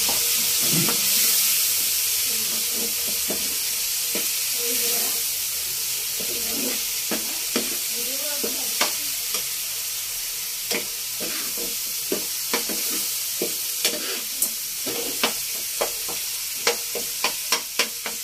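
Food sizzling in hot oil in a pan with a steady hiss, while a spoon stirs and clicks against the pan. The clicks come more often in the second half.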